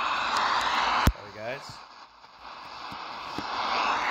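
Degen DE1103 shortwave receiver giving out static hiss on a weak shortwave signal. About a second in there is a sharp click, after which the hiss drops off and slowly creeps back up, as the receiver's telescopic antenna is being collapsed.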